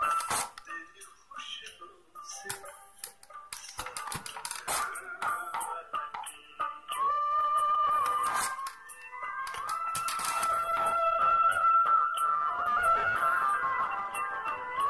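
A song played on a phone's small speaker and sent out through a homemade passive speaker made of a cardboard tube and two thermocol cups. It is sparse with percussive ticks at first, then fuller with long held melody notes from about halfway in.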